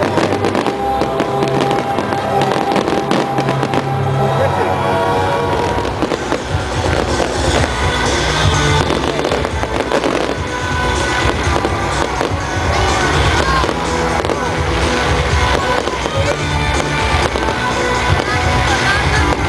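Aerial fireworks bursting overhead in a dense, continuous series of bangs and crackles, with music playing alongside.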